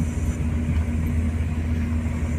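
A vehicle driving slowly on a rough dirt track, heard from inside the cabin: a steady low engine hum with road noise.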